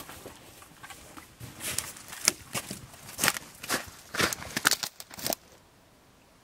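Footsteps crunching through snow and brush, about two steps a second, cut off abruptly near the end.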